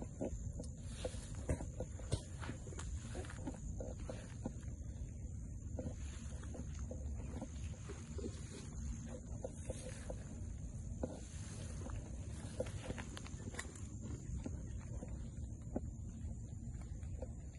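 Footsteps and rustling as someone walks through tall dry grass, with many short scattered crackles of stems brushing and snapping. Wind rumbles on the microphone underneath, and a steady high-pitched drone runs throughout.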